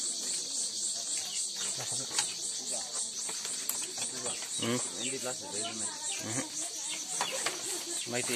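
A steady, high-pitched insect chorus that pulses in an even rhythm throughout, with people's voices talking underneath.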